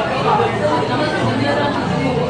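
Steady background chatter of several people talking at once in a busy restaurant dining room.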